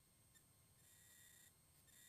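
Near silence, with a faint high steady tone that comes in twice.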